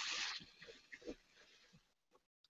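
Thin tissue paper napkin rustling as its plies are peeled apart: a soft, crinkly rustle that fades about half a second in, followed by a few faint crinkles.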